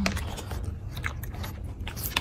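A bulldog puppy chewing a mouthful of dry kibble, with a quick, irregular run of small crunches.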